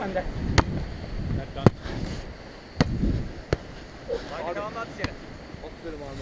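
A beach volleyball being struck by players' hands and forearms during a rally: a series of about five sharp smacks, roughly a second apart. A short call from a player comes partway through.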